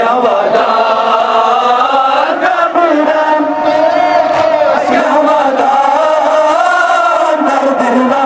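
A crowd of men chanting a Kashmiri noha, a mourning lament for Imam Hussain, together in one continuous sung line.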